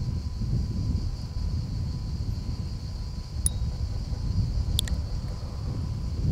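Steady low outdoor rumble of wind and background noise, with a faint steady high hiss and a few light clicks a little past the middle.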